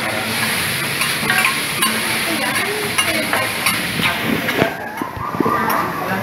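Vegetables sizzling on a hot teppanyaki griddle while metal spatulas toss and strike them, with sharp clicks and scrapes of steel on the steel plate throughout.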